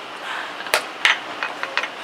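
Blitz chess moves: wooden-sounding chess pieces knocked down on the board and the chess clock's button slapped, two sharp knocks about a third of a second apart, followed by a few lighter taps.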